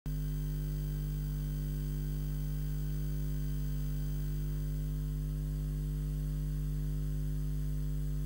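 Steady electrical mains hum: a low 50 Hz hum with a stack of higher overtones, holding an even level throughout.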